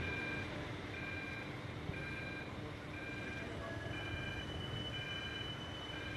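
Electronic beeper sounding about once a second, each beep about half a second long on two pitches at once, over steady street noise.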